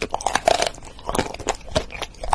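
Crunchy biting and chewing of a hard, car-shaped item: a quick, irregular run of sharp crunches.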